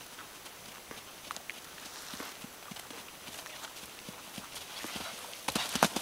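Hoofbeats of a 13.3-hand palomino pony (half Dartmoor, half Quarter Horse) cantering on grass: soft, irregular thuds that get louder in the last half second as the pony comes close.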